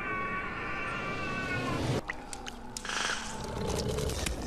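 A movie monster's long, wavering pitched cry that cuts off suddenly about two seconds in. Scattered clicks and a short hiss follow.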